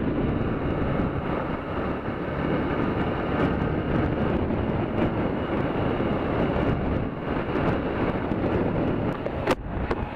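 A motorcycle running at road speed, its engine nearly buried under a steady rush of wind on the microphone and tyre noise. There is a short knock near the end.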